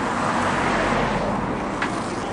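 Steady city street noise from road traffic, an even hiss with no pauses, with a brief click near the end.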